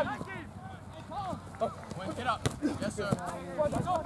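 Indistinct voices of people calling out across a soccer field, in short scattered shouts, with one sharp knock about two and a half seconds in.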